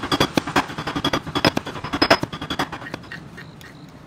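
Stone mortar and pestle pounding and grinding fresh mint leaves: quick, irregular knocks of stone on stone, several a second, which stop about three seconds in.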